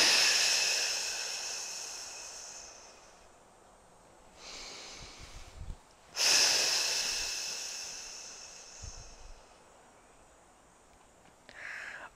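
A woman breathing out in two long, hissing exhales, each fading away over three or four seconds, with a quieter breath in between. These are transverse abdominis activation breaths, drawing the belly in on the exhale.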